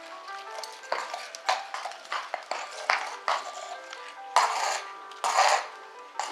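A horse pawing a wet concrete wash-bay floor with its forefoot: a run of hoof knocks about twice a second, then two louder, longer scrapes near the end, over background music. Pawing like this is a tied horse's demand for attention when left standing.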